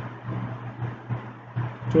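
A steady low hum with faint background noise, in a pause between phrases of speech.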